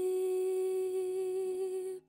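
Unaccompanied female voice holding one long, steady note, hummed with closed lips. The note stops abruptly at the end.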